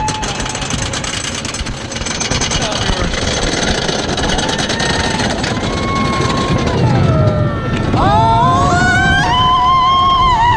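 Wooden roller coaster train rattling along its track, with heavy wind noise on the microphone. From about eight seconds in, riders scream with rising pitch as the ride picks up speed.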